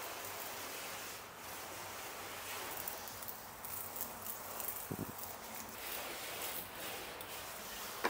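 Pressurized detail keg's spray gun misting rinseless wash solution onto a car's glass and paint: a steady, fairly quiet spray hiss. A short low thump about five seconds in.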